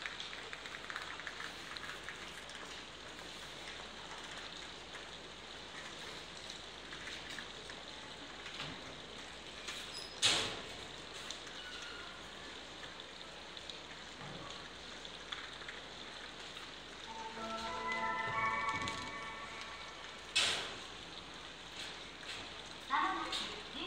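Steady background hiss of a railway station platform, broken by two sharp clicks about ten seconds apart. Near the end a short electronic chime melody plays over the platform speakers.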